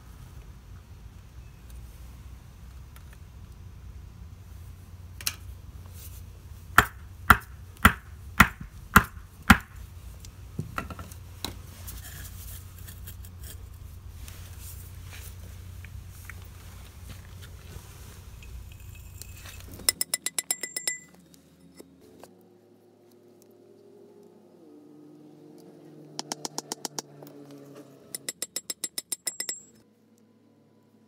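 A hammer striking a wooden block held on top of a steel EMT pipe, driving the pipe into wetted soil: six sharp knocks about half a second apart, then a few lighter ones. After a sudden drop in the background, quick runs of rapid ticking follow in the second half.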